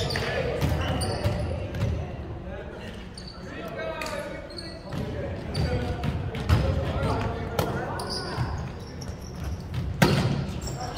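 Indistinct voices in a school gymnasium, with a ball thudding on the hardwood floor or being struck several times at irregular moments.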